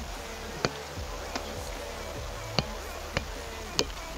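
A soccer ball thuds off a player's thigh as it is juggled: about five sharp touches at uneven intervals, roughly one every second or less. A faint steady hum runs underneath.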